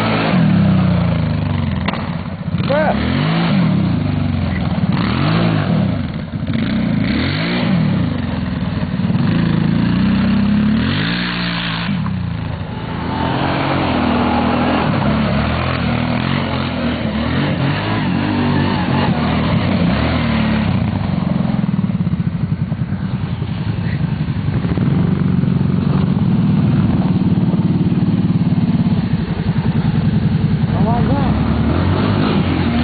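Kawasaki Brute Force ATV engine revving up and down over and over in the first half, then running more steadily under throttle in the second half as the quad is spun around on snow.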